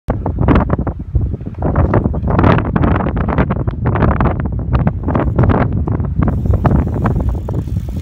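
Wind buffeting the microphone in loud, irregular gusts, a rough low rumble that surges and drops throughout.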